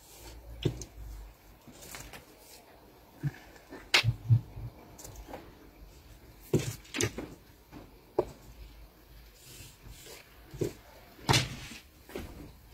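Irregular light taps, clicks and scrapes of a wooden ruler and a marker being handled on paper over a tabletop while pattern lines are drawn.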